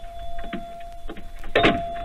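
Radio-drama sound effect of a customer entering a small store: the shop door's entry buzzer sounds one steady tone, with a short knock from the door about one and a half seconds in.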